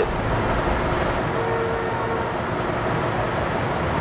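Steady city street traffic noise. A faint, thin tone, such as a distant horn or squeal, is held for about a second near the middle.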